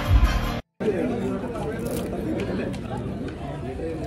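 Cinema film soundtrack playing loud with deep bass, cut off abruptly less than a second in; then the chatter of many people talking at once in the cinema hall.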